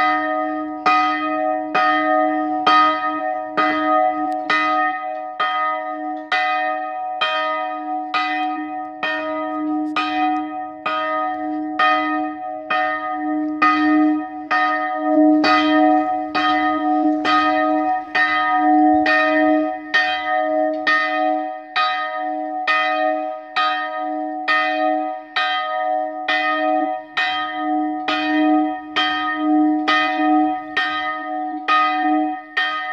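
A single church bell rung steadily, a little over one stroke a second, each stroke ringing on into the next.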